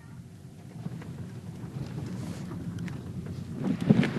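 Low, steady rumble of a car moving slowly, heard from inside the cabin, with a few short knocks near the end.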